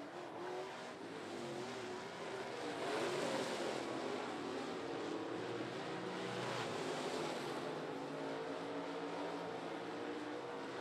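Dirt-track stock car engines racing on a clay oval, several cars at once, their pitch rising and falling as they accelerate and lift through the turns. The sound grows louder about three seconds in.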